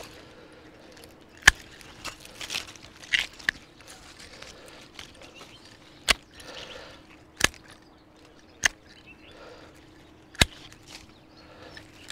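Hand pruning shears snipping grapevine canes: about five sharp clicks, a second or more apart, with the rustle of leafy canes being pulled and moved between cuts.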